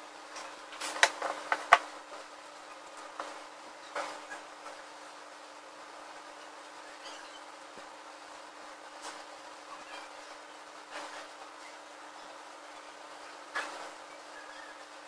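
Thin plastic film crinkling and crackling under a hand as it is pressed and smoothed over a gypsum-board model. A quick cluster of crackles comes about a second in, then scattered single ones, over a steady faint hiss.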